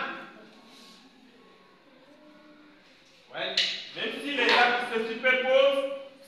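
A man's voice, quiet for the first half and then speaking from about three seconds in.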